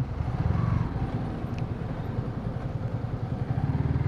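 Yamaha sport motorcycle's engine running at low speed, a steady low rumble, as the bike creeps through slow traffic almost to a stop.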